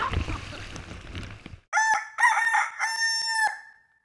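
Rushing water and wind noise that cuts off suddenly about a second and a half in, followed by a rooster crowing once: two short notes and a longer final one.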